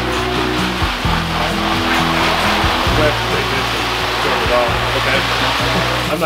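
Water spraying steadily from a hose onto a plastic apron as it is rinsed, heard over background music with held low notes.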